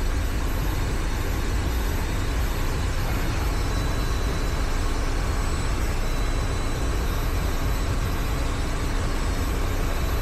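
Steady low rumble and airflow hiss of a powered-up Bombardier Global 7500's electronic equipment bay, with faint steady high-pitched whines from the running electrical and air systems.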